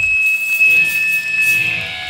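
Electric guitar feedback: a high, steady whine held for most of two seconds, fading near the end, with lower sustained guitar notes ringing underneath.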